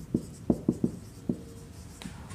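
Marker pen writing on a whiteboard: a run of short, quick strokes as letters are formed, one of them drawn out into a brief squeak about a second and a half in.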